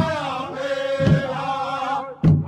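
Powwow drum group song: voices chanting together in long held notes over a large drum struck about once a second.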